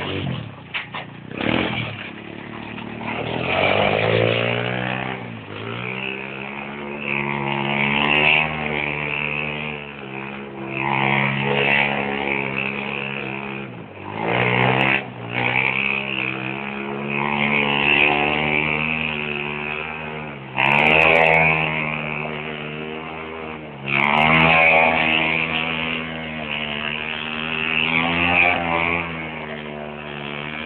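Go-kart engine revving up and down over and over, its pitch climbing and falling roughly every three to four seconds, with a brief drop off the throttle about halfway through.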